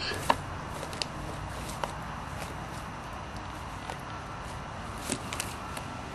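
Faint rustling of leaves and grass as a West Highland white terrier pushes through a garden shrub, with a few short sharp clicks scattered through it.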